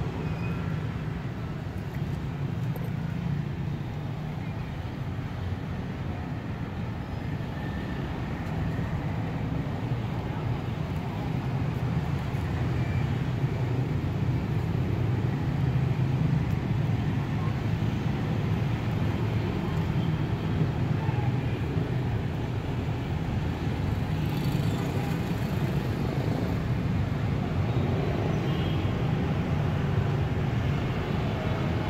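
Steady low rumble of background noise like street traffic, with no distinct events, growing a little louder about twelve seconds in.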